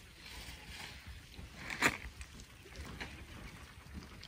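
Quiet outdoor ambience with a faint steady hiss, a few faint ticks, and one short, sharp click or chirp about two seconds in.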